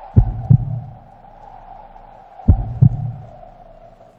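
Heartbeat sound effect: a pair of low thumps in quick succession, heard twice about two seconds apart, over a steady hum.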